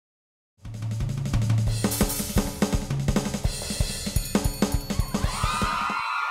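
Live rock drum kit starting about half a second in and playing a fast run of bass drum, snare and cymbal hits, with low bass notes under it. Near the end a sustained electric guitar tone comes in, bending in pitch.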